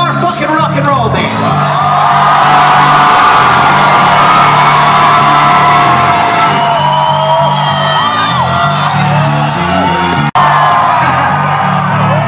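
Live rock band playing, with long held sung notes riding over a steady low bass line. The sound drops out for an instant about ten seconds in.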